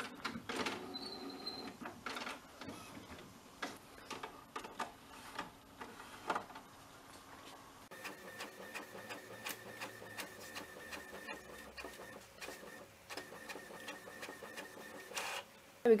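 HP Envy Photo 6230 inkjet printer printing a sheet, with a run of clicks and mechanical whirring as the sheet feeds and the print carriage moves. A steadier motor whine joins about halfway through.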